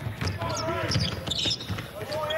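A basketball being dribbled on a hardwood court, several sharp bounces, with voices on the court in between.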